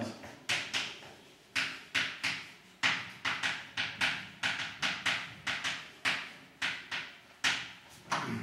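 Chalk writing on a blackboard: an uneven run of sharp taps, each trailing into a brief scratch, about two or three a second.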